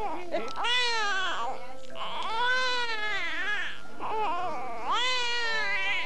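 A baby crying: three wailing cries, each rising and then falling in pitch, the middle one the longest.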